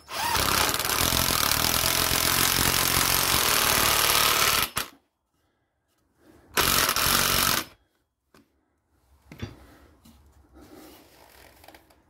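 Makita 18 V cordless impact driver driving a screw into timber through a socket adapter: one long run of about four and a half seconds, then a second short burst about six and a half seconds in as the head is drawn down into the wood. Faint handling noise near the end.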